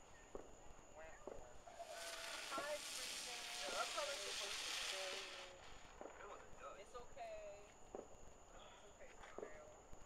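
A firework hissing as it burns for about three and a half seconds, with scattered voices and laughter around it.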